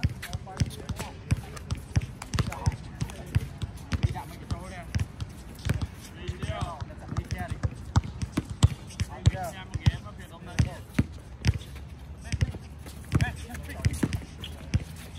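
A basketball is bounced again and again on an outdoor hard court as players dribble. Players' voices call out in the distance.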